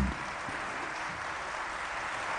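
Large audience applauding steadily.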